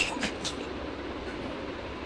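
A few short clicks and cloth rustles as fabric is handled at a stopped sewing machine, then a steady background noise.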